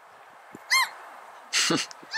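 A gull gives a single short call about three-quarters of a second in, its pitch rising and falling, followed near the end by a louder, harsher sound.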